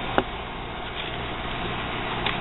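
Air conditioner running with a steady fan-and-compressor hum and rush, having just kicked on. A brief click sounds about a fifth of a second in.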